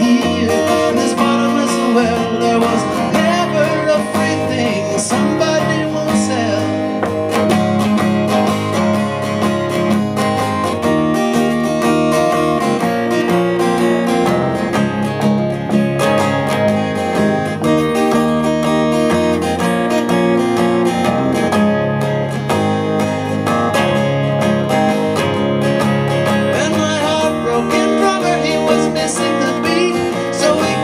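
Two acoustic guitars playing together, strummed and picked, in an instrumental break of a live folk song.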